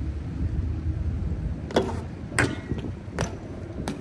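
BMX bike rolling on skatepark concrete: a low tyre rumble with four sharp clacks less than a second apart, the first two loudest.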